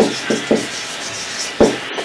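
Marker pen writing on a whiteboard: short rubbing strokes of the tip across the board, three quick ones at the start and a sharper one about a second and a half in.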